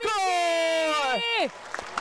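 A sports commentator's long, drawn-out shouted goal call, held for over a second and falling in pitch as it ends, followed by a brief lull.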